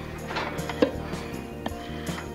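A wooden spoon scraping chopped zucchini relish mixture out of a bowl into a steel pot, with a few short knocks and clinks, the loudest just under a second in, over soft background music.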